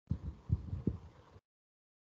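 A few soft, low thumps picked up by a video-call microphone, cutting off suddenly about a second and a half in.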